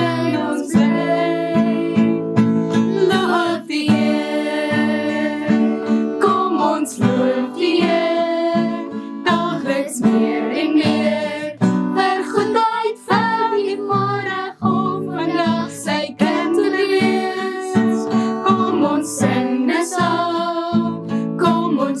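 A woman and four girls singing a hymn together to a strummed acoustic guitar.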